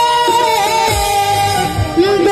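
A boy singing a long held, slightly wavering note into a stage microphone over music, with a low bass sound in the second half.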